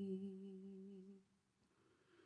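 A woman's singing voice holding the last note of a phrase, steady in pitch and fading out just over a second in, then near silence.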